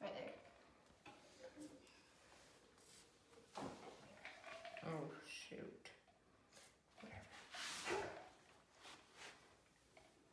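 Quiet, indistinct voices, with a few light knocks of small wooden blocks being set down on a particle-board sheet.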